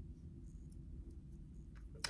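Quiet room tone: a steady low hum with a couple of faint clicks.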